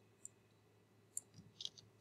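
Near silence broken by a few faint computer mouse clicks, mostly in the second half.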